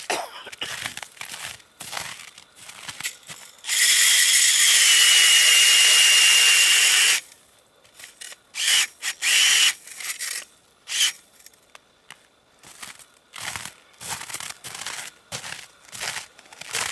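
Makita cordless drill spinning an ice auger into lake ice: the motor whines steadily for about three and a half seconds, then gives two short bursts. Boots crunch on snow before and after.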